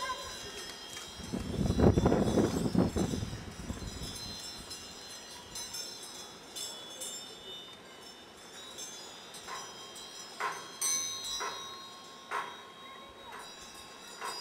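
High, chime-like ringing tones sounding steadily. About two seconds in there is a louder burst of low rushing noise, and a few sharp clicks or knocks come in the last few seconds.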